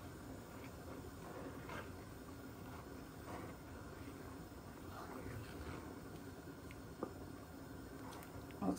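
Faint scraping strokes of a spoon stirring milk and grated carrot in a steel pan, every second or two, with a sharper click about seven seconds in, over a low steady hiss.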